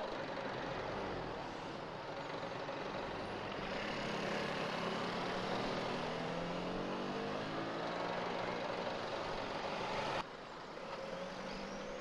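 Double-decker bus engine running close by, with an engine note that slowly climbs and then eases back between about four and nine seconds in. The sound drops suddenly in level about ten seconds in.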